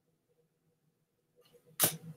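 Near silence, then a single short, sharp click near the end.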